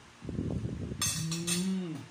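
A man's low, drawn-out vocal sound with a mouthful of food, not words: rough and gravelly for the first second or so, then a steady pitched tone that dips and cuts off near the end.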